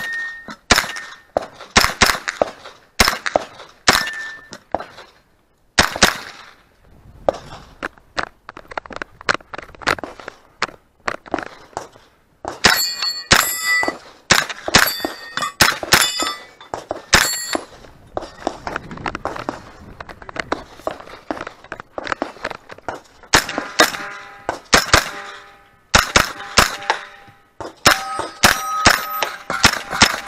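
A 9mm Just Right Carbine firing in quick strings of shots with short pauses between them, many of the shots followed by steel targets ringing when hit.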